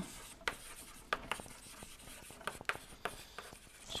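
Chalk writing on a blackboard: a string of short taps and scratches as words are chalked up.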